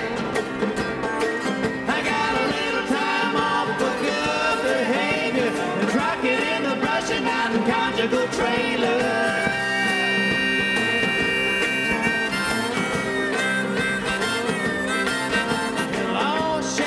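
Bluegrass string band playing an instrumental break: banjo, mandolin, guitar and upright bass under a harmonica lead. Around the middle the harmonica holds one long note for a couple of seconds.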